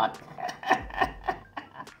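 A person laughing in short, evenly spaced bursts, about three a second, growing fainter toward the end.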